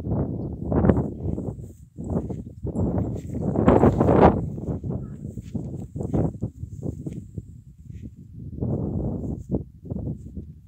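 Draft horses close by: a run of short, rough horse noises and knocks as they move about, with one louder, longer burst about four seconds in.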